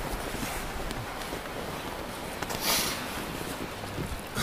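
Wind buffeting the microphone outdoors: a steady hiss with an uneven low rumble, and one short louder hiss about two and a half seconds in.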